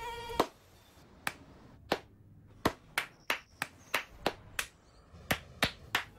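A mosquito's thin whine that cuts off with a hand clap less than half a second in, then about a dozen more sharp single claps, slow at first and coming faster, as someone tries to swat the mosquito between their hands.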